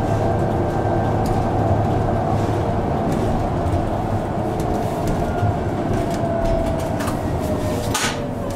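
City transit bus running on the road, heard from inside: a steady engine and road drone with a drivetrain whine that falls in pitch over the last few seconds as the bus slows. A sharp click comes at the very end.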